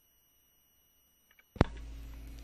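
Near silence, then about one and a half seconds in a single sharp click, followed by the steady low hum and surface noise of the vinyl record playing into its next track.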